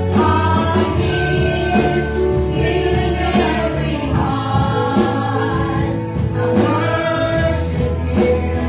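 Live gospel praise-and-worship band: several voices singing together over keyboard, bass and a steady drum beat.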